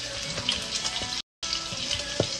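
A wooden spoon stirs and scrapes a mashed potato, broccoli and cheese mixture in a stainless steel bowl, making a few small knocks over a steady sizzling hiss. The sound cuts out completely for a moment a little past the middle.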